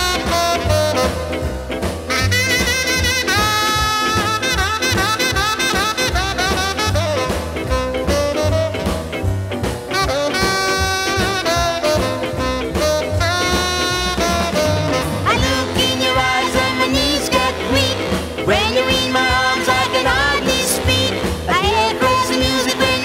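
Instrumental passage of a 1960s ska record: horns carry the melody over a steady, bouncing beat, with no singing.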